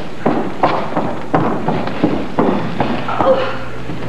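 Footsteps on a stage floor: a string of irregular thuds and knocks, about three a second.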